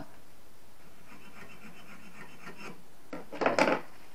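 A hand tool working against a copper refrigerant pipe with a run of quick, faint, even scraping strokes, then one louder scrape near the end.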